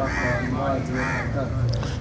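A bird calling in the background, two main calls about a second apart, each rising and falling in pitch, with fainter calls between, over a low steady hum.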